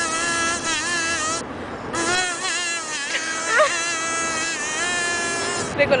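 Plastic kazoo played to hum a song melody: a buzzy tone whose pitch bends up and down from note to note, with a short break about a second and a half in.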